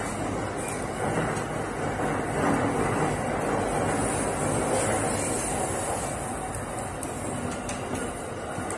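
E231-series electric commuter train running on the rails, its steady wheel-and-rail rumble heard from the driver's cab, easing slightly near the end. The audio carries an added echo effect.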